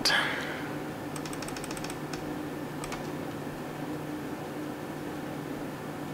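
Steady low room hum with a quick run of about ten light clicks a little after a second in, then two or three single clicks: working a computer's controls to step through photos.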